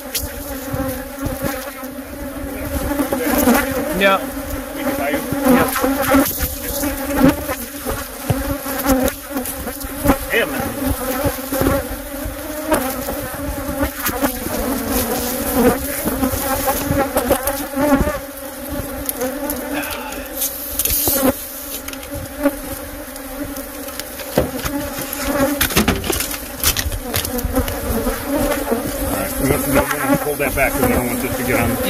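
Loud, steady buzzing of a defensive colony of Africanized honey bees swarming around their nest in a vehicle tailgate, with scattered knocks and rustles of handling on top.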